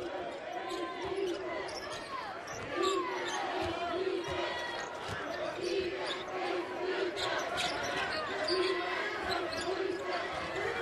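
Basketball being dribbled on a hardwood court, a steady run of bounces at about two a second, with the odd sneaker squeak over a low arena crowd murmur.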